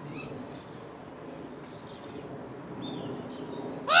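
Faint, brief high chirps of small birds over a low background murmur; near the end a common raven gives one loud, harsh croak.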